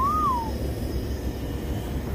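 A single short whistle-like note at the start, rising slightly then falling, over the steady low rumble of a lit gas camp-stove burner heating a pot of water.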